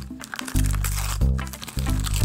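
Gift-wrapping paper being torn and crinkled off a toy package, over background music.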